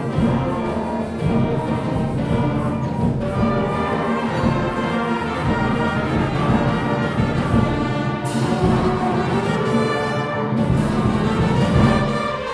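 A high school concert band, brass and woodwinds with percussion, playing a Christmas carol arrangement. The music goes on steadily, with a sudden bright accent about eight seconds in and another near ten and a half seconds.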